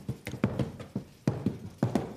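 A tap dancer's basic step: a quick, uneven run of about ten sharp shoe taps on the stage floor.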